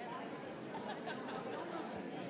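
Steady murmur of many people talking at once: an audience chatting indistinctly during the interval.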